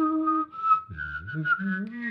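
A person whistling a melody while voicing a lower line at the same time, two parts at once. A note is held for about half a second, then after a short break the tune moves on through changing notes.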